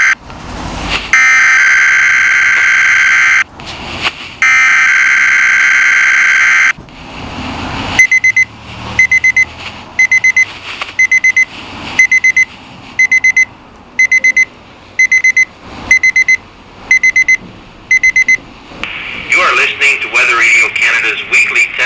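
Oregon Scientific WR-602 portable weather radio sounding Weather Radio Canada's monthly alert test: two long, loud, steady alert tones, then about ten seconds of the receiver's high-pitched alarm beeping in quick bursts about once a second, showing that its alert function has triggered. Faint traffic noise runs underneath.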